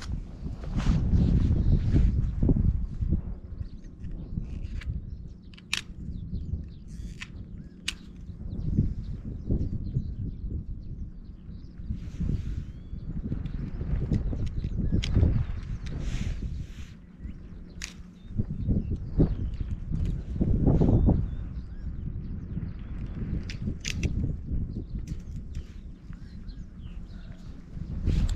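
Wind buffeting the microphone, with rustling and a few sharp clicks and snaps as a wire-mesh fence is worked free of its posts with a utility knife.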